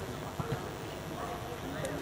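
Indistinct chatter of spectators and players, with two short low thumps about half a second in.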